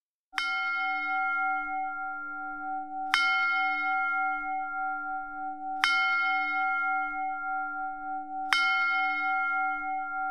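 A resonant bell struck four times, evenly, about every 2.7 seconds. Each stroke is still ringing when the next comes, with a slowly wavering hum under it.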